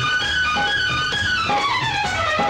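Instrumental interlude of a 1980s Bollywood film song, with no singing: a melody line that slides down in pitch from about halfway through, over a steady beat of about two strokes a second.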